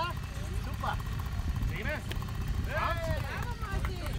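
Voices talking in short stretches over a steady low rumble.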